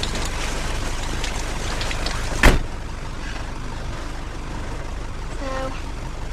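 A car door slams shut once about two and a half seconds in, over the steady low rumble of the car's running engine; after the slam the background is a little quieter.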